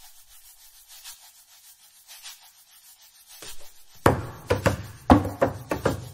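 Hands rubbing and brushing inside a Bösendorfer grand piano give a soft, hissy swishing. From about four seconds in this gives way to a series of sharp, loud percussive knocks played on the piano.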